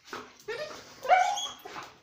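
Dog whining and yelping as it jumps up in greeting, with one long rising cry in the middle.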